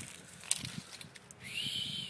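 A bird's single whistled call, rising then falling in pitch, about a second long in the second half. Faint rustling and a sharp click about half a second in lie under it.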